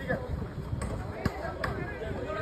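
Men's voices talking, with three sharp knocks about half a second apart in the second half.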